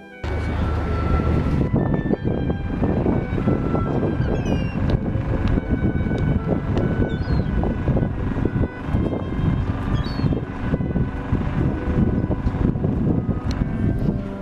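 Wind buffeting the microphone by the sea, with gulls calling a few times, around four to five seconds in and again near ten seconds.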